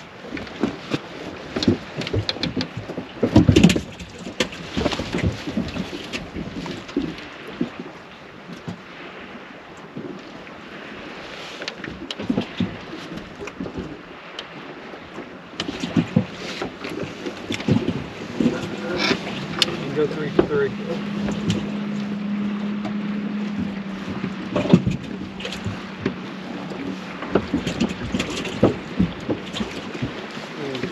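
Knocks and clicks of gear against a fishing boat's hull and deck, the sharpest a few seconds in, with a steady low hum that comes in past the middle and lasts several seconds.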